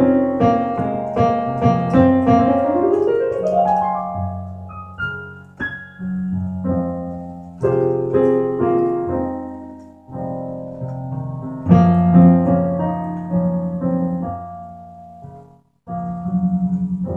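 Solo piano playing a slow Latin-jazz instrumental passage: struck chords and single notes that ring and fade, with a rising run of notes a few seconds in. It breaks off briefly just before the end.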